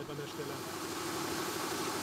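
Lorry engine idling in the background: a steady low hum under an even hiss.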